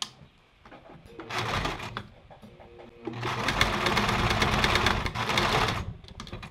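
Electric home sewing machine stitching: a short burst of stitches, then a longer, louder run of about three seconds. The machine is tacking closed the end of a narrow rolled cotton strip.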